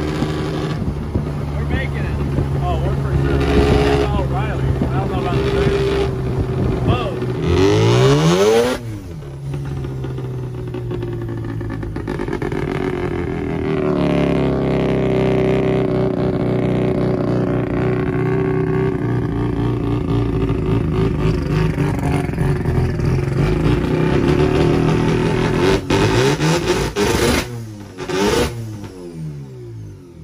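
Van engine running, heard from inside the cab while driving. Its pitch sweeps up and down about eight seconds in, again around fourteen seconds, and twice near the end, and the sound falls away at the very end.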